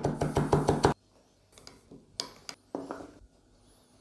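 Kitchen knife rapidly chopping fresh parsley on a wooden cutting board: a quick run of sharp knocks in the first second, followed by a few softer, scattered knocks.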